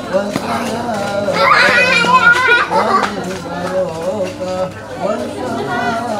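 A group of men's voices murmuring an Arabic prayer together, with children's high voices rising over them and loudest for about a second, a second and a half in.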